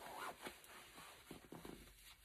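Zipper on a long puffer coat being pulled up from the bottom: faint, in a few short scratchy strokes.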